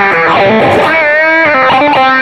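Electric guitar played through a hand-built fuzz pedal with a wah engaged: a distorted single-note lead line of sustained notes with bends and vibrato.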